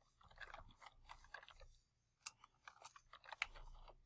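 Faint computer keyboard typing: quick, irregular key clicks, with a short pause about halfway through.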